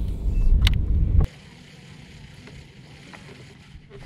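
Wind rumbling on the microphone with a couple of sharp clicks. It cuts off suddenly about a second in, giving way to quiet open-air background with a few faint ticks.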